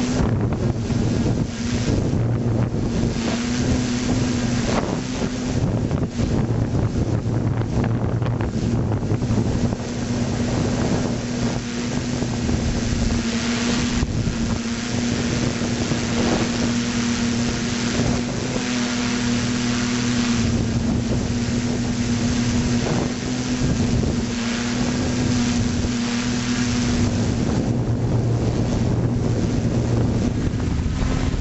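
Multirotor drone's electric motors and propellers humming steadily, heard through its onboard camera, with wind buffeting the microphone.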